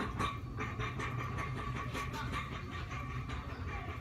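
Warehouse store background: a steady low rumble with a faint steady hum, over irregular small clicks and rattles.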